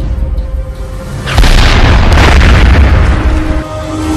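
Dramatic soundtrack music with a heavy cinematic boom about a second and a half in. The boom rumbles on for about two seconds, then drops away near the end.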